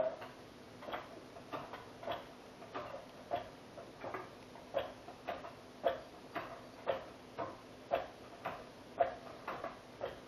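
Floor jack being pumped by its long handle, a light click with each stroke, about two a second at an even pace, as the jack slowly raises a Jeep door to push it off its hinge pins.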